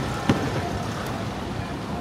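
Steady din of longtail boat engines across a busy bay, with a single short sharp click about a third of a second in.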